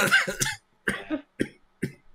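A short laugh with a spoken "yeah", then three short coughs about half a second apart.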